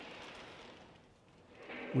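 Faint rolling noise of O gauge model passenger car wheels on three-rail track as the cars are pushed along by hand, fading away over the first second.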